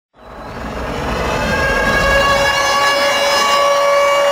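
Concert sound system playing a long held electronic tone that fades in from silence and swells over the first two seconds, with a low rumble beneath it early on.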